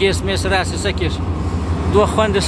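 A man's voice singing in wavering, held notes, breaking off about a second in, over a steady low engine drone.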